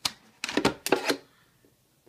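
Thin plastic soda bottle being stabbed and cut with a folding knife. A sharp crack comes at the start, then a quick run of crackles and clicks from about half a second in, dying away after a little over a second.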